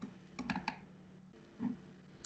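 A short run of quick, soft computer clicks about half a second in, made while a web page is scrolled, then a faint soft sound about a second and a half in.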